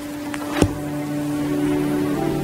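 Organ beginning soft prayer music: a held note, joined by a lower one just over half a second in, swelling into sustained chords. A single sharp knock about half a second in.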